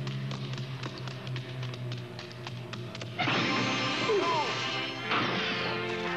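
Cartoon soundtrack music with a run of quick percussive clicks. About three seconds in, a sudden louder crash-like burst with swooping pitch glides breaks in.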